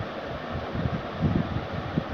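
Marker pen writing on a whiteboard: soft, irregular strokes over a steady background hiss.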